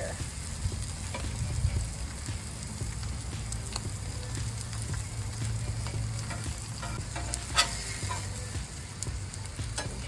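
Ribeye steak sizzling on a cast-iron RV griddle, with a metal spatula scraping and clicking against the griddle plate; one sharper clack comes about three-quarters of the way through.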